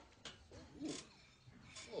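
A voice giving a quiet, drawn-out "ooh" that rises and falls in pitch, then starting an "oh" near the end.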